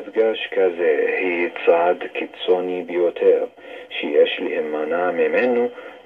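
A speaker talking in Hebrew over a shortwave AM broadcast, played through a Kenwood communications receiver's loudspeaker. The voice is thin and cut off above the narrow AM audio band.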